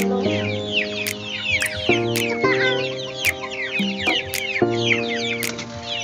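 Chickens clucking and chirping in many quick, high, falling calls over background music of sustained chords that change every second or two. Several sharp clicks stand out.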